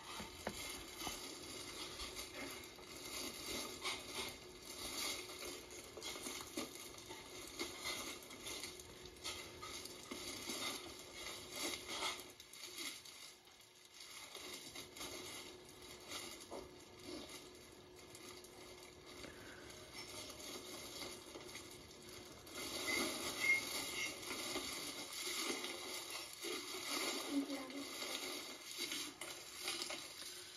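Crinkly shredded gift filler rustling and crackling irregularly as it is pulled apart by hand, louder for several seconds near the end, heard through a TV's speaker.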